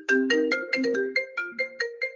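Incoming-call ringtone playing a quick melody of short struck notes, about seven a second.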